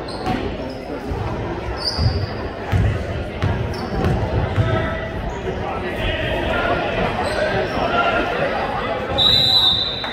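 A basketball bouncing on a hardwood gym floor, several thumps, with short sneaker squeaks and voices echoing in the gym. A referee's whistle blows for about half a second near the end.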